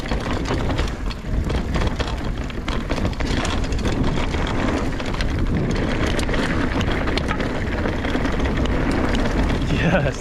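Mountain bike riding downhill on a dirt and gravel trail: a steady rush of wind on the microphone with tyres rolling over the ground, and many small clicks and rattles from the bike and loose stones.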